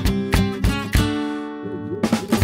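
Cartoon soundtrack music: a strummed acoustic guitar plays quick chords, the last one ringing out and fading about a second in, then a low wavering tone comes in near the end.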